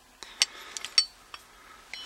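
Metal parts of a 1931 Smart Endurance line tightener, a spoked wheel and ratchet on an iron bar, clinking and clicking as it is handled and turned over. The clicks come irregularly, about half a dozen, with the sharpest about a second in.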